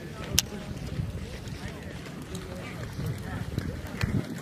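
Indistinct men's voices talking in the background, with one sharp click about half a second in.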